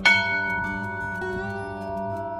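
Background instrumental music: a bell-like note is struck at the start and rings on, slowly fading over soft sustained notes.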